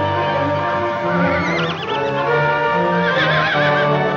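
Orchestral film score with a horse whinnying twice, a quavering call about a second in and another about three seconds in.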